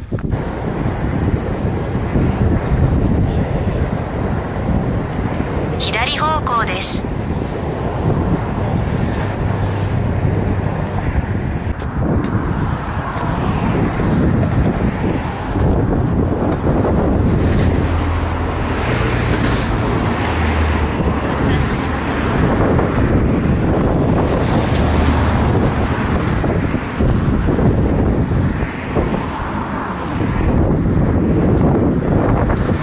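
Strong wind buffeting the microphone of a camera carried on a moving bicycle, a steady low rumble that never lets up, with road traffic passing alongside in the later part. A short falling tone sounds about six seconds in.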